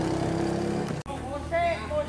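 An engine running at a steady idle, cut off abruptly about a second in, followed by men's voices over a fainter low engine hum.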